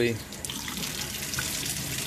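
Plumbed laboratory eyewash station running: water gushing from its two spray heads and splashing into a stainless steel sink, a steady rush that holds even from just after the start.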